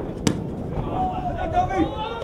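A football kicked once on a grass pitch, a single sharp knock about a quarter second in. Players' shouts follow from about a second in, over open-air crowd and wind noise.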